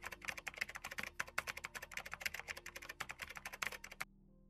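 Fast typing on a computer keyboard, a dense, even run of keystrokes that stops right at the end.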